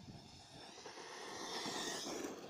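Brushless electric motor of an Arrma Talion RC buggy on a 6S LiPo whining, with its tyres on dirt. It grows steadily louder as the car comes closer, with the high whine strongest near the end.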